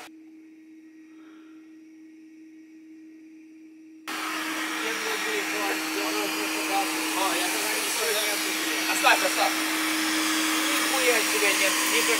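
A vacuum sucking up honeybees, running with a steady hum. It is faint at first and gets abruptly much louder about four seconds in.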